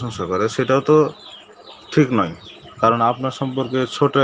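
Only speech: a man talking in Bengali, with two short pauses.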